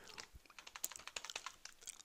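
Faint computer keyboard typing: a quick run of keystrokes as a short phrase is typed.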